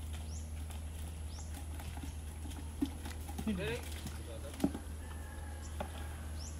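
Outdoor ambience: a steady low hum with a short, high, rising chirp repeating about once a second. A brief voice-like call comes in the middle, and there are two sharp knocks.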